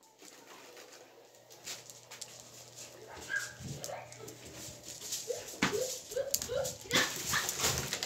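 Whimpering: a run of short rising whines a little past halfway, among scattered rustles and knocks close to the microphone.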